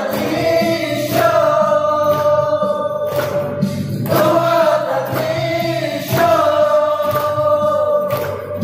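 A group of young voices singing a Mao Naga pop song together in long held phrases, accompanied by acoustic guitar and hand clapping.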